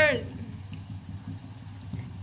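Tapioca rings deep-frying in a pot of oil: a faint hiss of bubbling oil over a steady low rumble, just after a shouted word cuts off at the very start.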